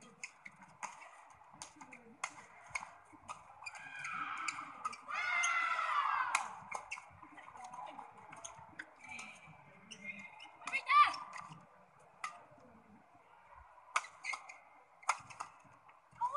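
Badminton rally: sharp racket strikes on the shuttlecock, with court shoes squealing on the playing mat, loudest about five to six seconds in and again in a short sharp burst around eleven seconds.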